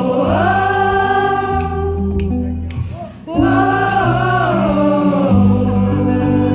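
A male singer with an acoustic guitar, joined by an audience singing along. There are two long, gliding sung phrases over steady low guitar notes, with a brief drop between them about three seconds in.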